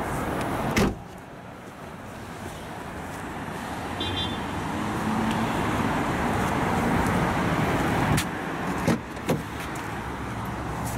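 The tailgate of a Vauxhall Astra hatchback shut with a single loud thump about a second in. Background traffic noise swells in the middle, then the car's rear door latch clicks and the door is opened near the end.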